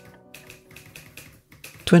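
Typing: quick, irregular key clicks start as a guitar tune ends, and a voice begins right at the end.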